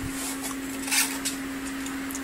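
Styrofoam ice-chest lid carrying a Peltier cooler's heat sink and fan being handled, with a few short scraping rubs, the loudest about a second in, over the steady hum of the running cooling fans.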